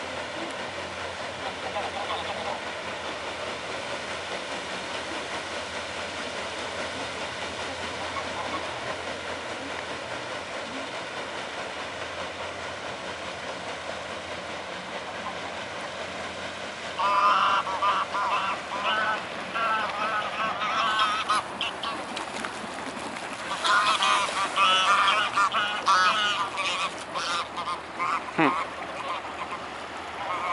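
A flock of geese honking in two loud bouts of calls starting about halfway through, each lasting several seconds, over a steady background noise.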